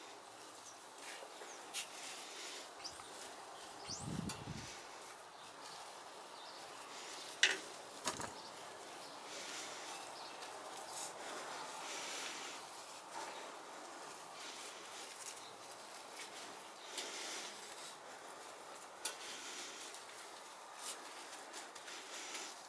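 Faint rustle and crumble of gloved hands pushing loose soil around a tomato seedling and firming it down, with a few small clicks and a soft thump about four seconds in.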